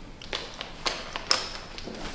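Scattered light clicks and taps, about six in two seconds, short and sharp with no steady sound between them.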